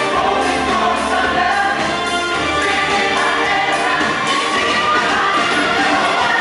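Music with a choir singing long, held notes.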